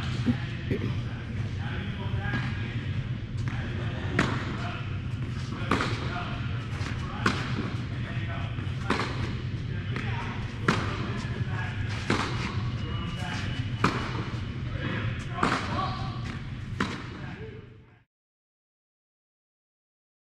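Tennis balls struck by a racquet on an indoor court, a sharp pop about every one and a half seconds, over a steady low hum. The sound fades out shortly before the end.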